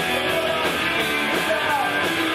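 Live rock band playing: electric guitars and bass over drums, with a man singing into the microphone.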